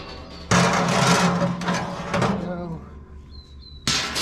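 Metal mesh cooking grate scraping against the offset smoker's steel cook chamber as it is lifted out. A long scrape runs for about two seconds, then a sharp clank comes near the end.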